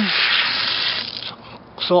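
Water hissing as it sprays from a newly plumbed garden irrigation pipe onto the dirt during a test of the lines. It fades out about a second and a half in.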